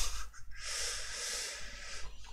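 A man's long breath out, a steady hiss lasting about a second and a half, starting about half a second in.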